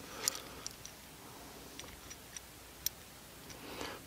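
Faint, scattered light clicks of a small metal bolt and holster plate handled while the bolt is threaded back in by hand, the sharpest click about three seconds in.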